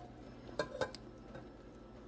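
Two light clinks of kitchenware a little after half a second in, over a faint low hum.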